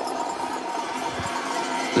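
Steady outdoor background noise of a cross-country ski-race course picked up by the broadcast microphones, with a few faint low knocks about a second in.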